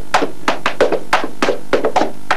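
Hard leather shoes tap-dancing on a wooden floor: quick, sharp taps about five or six a second in an uneven rhythm.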